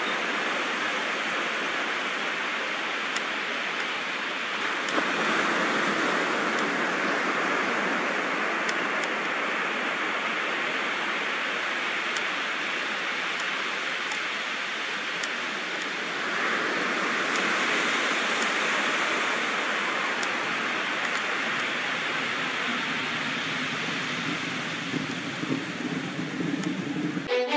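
A steady rushing hiss with no tone in it, growing a little louder about five seconds in and again about sixteen seconds in.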